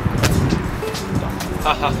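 Trainers landing on paving slabs after a jump down from a brick wall: one sharp slap about a quarter second in. Short bursts of laughter near the end.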